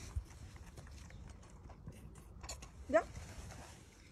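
Faint scattered clicks and rustling from a lamb at its feeding bottle as the bottle runs out. A woman asks a short rising question about three seconds in.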